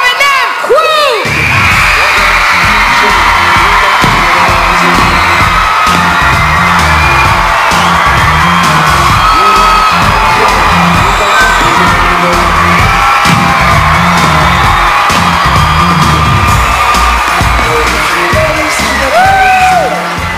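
Loud pop dance track with a heavy, evenly pulsing bass beat, kicking in about a second in, over a large audience cheering and whooping.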